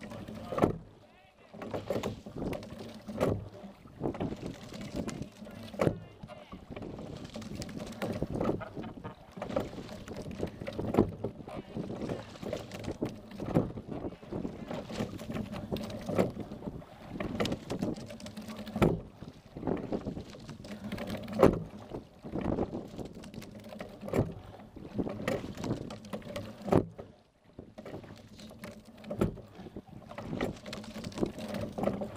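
Single sculling boat being rowed at race pace, heard from on board: a sharp clunk of the oars in their gates at each stroke, about every two and a half seconds, over the steady rush of water along the hull.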